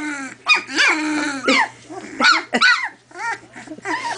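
Two-week-old collie puppies yipping and whining, a quick run of short calls that rise and fall in pitch, several puppies calling over one another as they wrestle.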